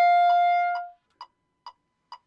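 Clarinet holding the final note of an étude, fading out just under a second in. Then a metronome ticking steadily, a little over two clicks a second.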